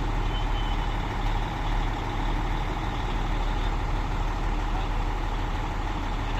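Crane truck's engine running steadily with a low rumble. A short high beep sounds about half a second in.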